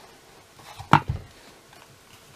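A single sharp knock about halfway through, followed by a softer thud: a craft punch being set down on the work surface.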